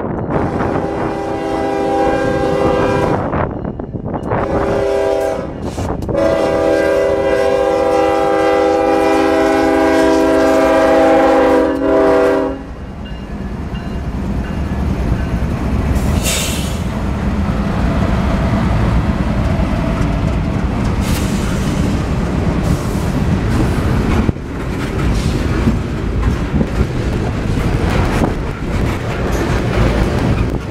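Norfolk Southern GE Evolution Series diesel locomotive sounding its multi-note horn for a road grade crossing: two shorter blasts, then a long one held until it stops about twelve seconds in. The lead locomotives then pass with a low diesel rumble, followed by a string of refrigerated boxcars rolling by with the steady noise of wheels on rails.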